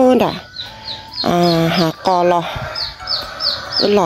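Chickens calling: a few drawn-out calls, the first falling off just after the start, over a steady run of short, high, falling peeps about three a second.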